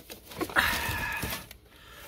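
A person's breathy exhale, lasting about a second, just after a faint click.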